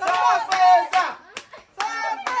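Excited high-pitched voices of children shouting and cheering, with hand claps among them and one sharp clap about one and a half seconds in.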